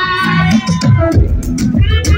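Loud live music through a concert PA, with a strong bass and amplified vocals, including a high wavering melody line.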